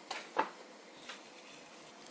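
Two dogs at tug-of-war play making a few brief, sharp noises. The loudest comes about half a second in, and a fainter one about a second in.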